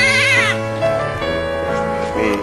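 A young child crying, one wavering wail that breaks off about half a second in, over background music.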